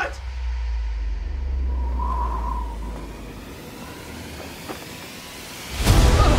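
A deep cinematic rumble with a faint high tone over it, fading out over about three seconds into a quiet hiss; a loud burst of sound comes in right at the end.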